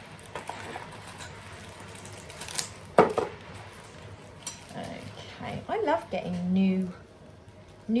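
Metal cutlery clinking as pieces are handled and taken out of their plastic wrapping, with one sharp clink about three seconds in. A few murmured vocal sounds follow.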